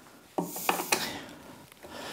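A screwdriver working on a hard plastic top-box mounting plate: a few sharp clicks about half a second in, then plastic rubbing and handling.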